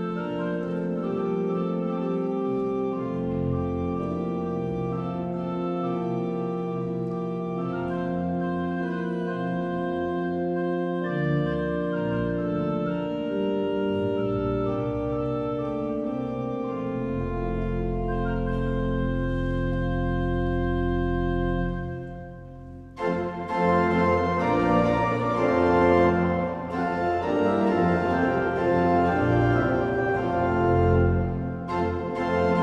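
Large church pipe organ playing the introduction to a hymn in sustained chords. About 22 seconds in it breaks off briefly, then comes back louder and fuller as the hymn itself begins.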